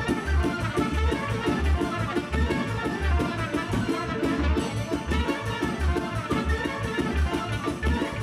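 Moldovan folk dance music played by an instrumental ensemble, with a strong, even bass beat.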